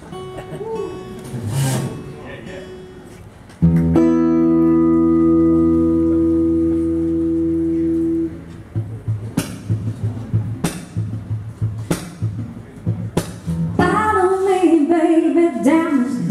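Live acoustic song intro: a few quiet guitar notes, then a loud chord held steady for about five seconds that cuts off suddenly. After it comes a rhythmic strummed pulse, and a woman's singing voice comes in near the end.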